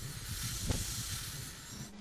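A steady hiss that slowly fades, with a single low thud about two-thirds of a second in.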